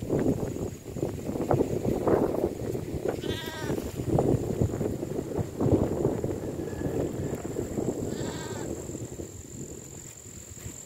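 Wind buffeting the microphone in a steady rumble, with a bleating farm animal calling twice, a short quavering bleat about three seconds in and another near the end.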